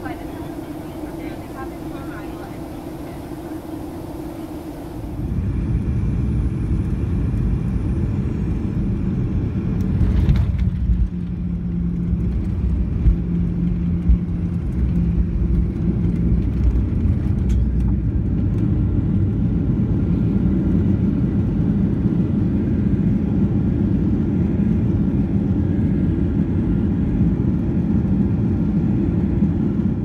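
Cabin noise of a Boeing 737-800: steady jet hum with high hiss in descent, then, from about five seconds in, the louder low rumble of the jet rolling on the runway. About ten seconds in a sharp knock comes, after which the rumble grows louder and a low steady tone runs for several seconds.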